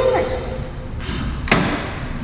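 A single sharp thud about a second and a half in.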